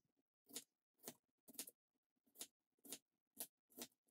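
Sharp santoku-style knife slicing thin half-moons off a red onion on a plastic cutting board: about seven faint, crisp cuts, roughly two a second, each ending as the blade meets the board.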